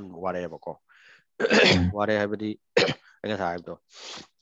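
Speech, interrupted about one and a half seconds in by a loud, rough throat clearing.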